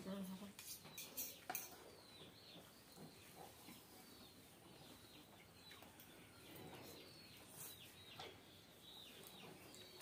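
Mostly quiet eating sounds: a few faint clinks of metal forks against plates as noodles are twirled and eaten, with a few faint bird chirps in the background.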